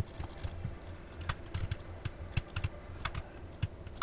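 Typing on a computer keyboard: irregular bursts of keystroke clicks while code is being entered and edited.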